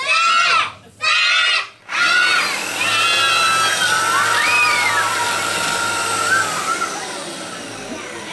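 Children chant the last beats of a countdown, then a card-throwing machine, an electric drill spinning a wheel, runs with a steady low hum for a few seconds, flinging playing cards, while the children shriek and cheer.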